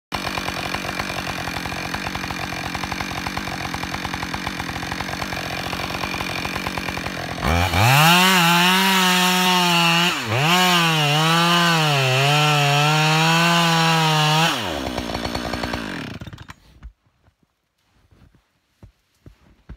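Two-stroke chainsaw idling, then run up to full throttle for about seven seconds as it cuts into the base of a tree trunk, its engine pitch sagging and recovering under load with a brief dip about halfway. It drops back to idle and is shut off shortly before the end.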